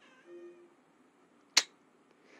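A cat gives one short, faint meow, and about a second later there is a single sharp click.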